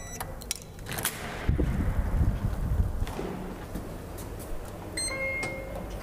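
Clicks and a low rumble from the chip-operated door lock and glass door being opened. About five seconds in comes a single short electronic beep lasting about half a second.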